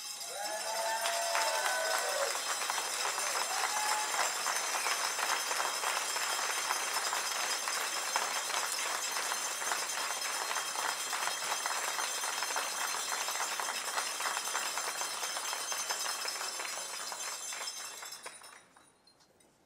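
A room full of people applauding: a long, steady round of clapping.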